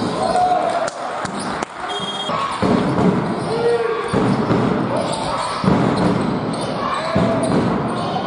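Live basketball game in a large hall: players' short shouts and calls ring out with echo over sharp thuds of the ball bouncing on the wooden court.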